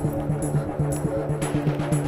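Background film music with a steady percussive beat about twice a second over a low repeating bass note.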